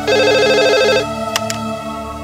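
A home cordless telephone ringing: one burst of fast warbling electronic trill about a second long, then a click as the handset is picked up.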